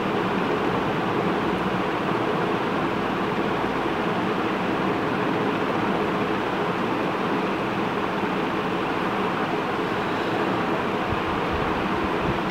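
Electric fan running: a steady, even whooshing hiss with a faint hum underneath.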